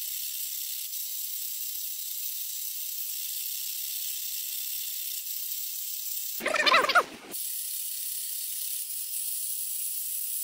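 Steady hiss of water spraying inside a running dishwasher, heard from within the tub. About six and a half seconds in, a loud warbling sound lasting under a second breaks through it.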